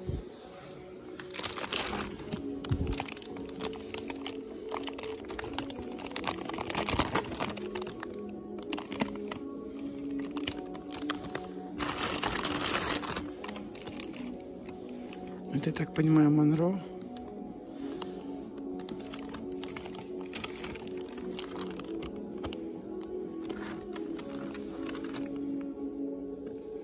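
Clear plastic flower sleeves crinkling and rustling in several bursts as wrapped potted orchids are handled, over steady background music.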